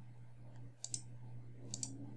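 Computer mouse clicking faintly: two quick pairs of clicks, about a second in and near the end, over a faint steady low hum.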